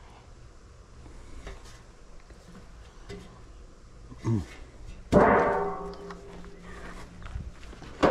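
Sheet-metal access panel from an outdoor air-conditioner condenser set down with a sudden metallic bang about five seconds in, ringing and dying away over about two seconds.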